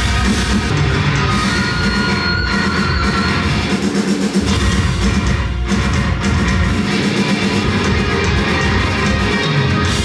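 Live metal band playing loudly: distorted electric guitars over a drum kit.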